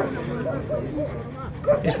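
German Shepherd dog whining and yipping in a string of short, high, arching calls.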